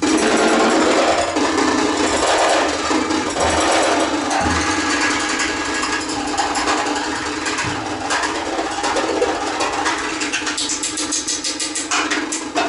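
Free-improvised trio of bass clarinet, cello and drum kit playing a dense, noisy texture: a held low tone under a rough haze of sound, with rapid clicks that grow denser near the end.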